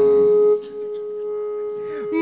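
Live band music at a pause between phrases: a steady held note sounds, drops away sharply about half a second in and lingers quietly, and new held notes come in at the end.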